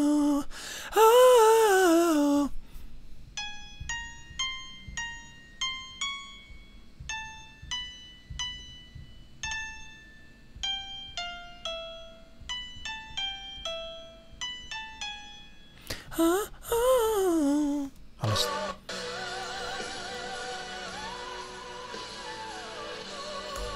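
Single keyboard notes picked out one at a time, about two a second and mostly stepping downward, as the high notes of a vocal run are worked out by ear. Before them comes a short sung falling phrase, and another comes after them; near the end a recorded live pop performance with a singer plays.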